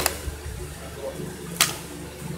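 Handling noise as plastic toy trains are moved about by hand: two sharp clicks about a second and a half apart, over a low steady hum.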